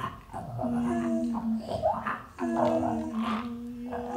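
Free-improvised vocal trio: several voices using extended technique, with three held sung notes of about a second each on the same low pitch, separated by rough, noisy, animal-like vocal sounds.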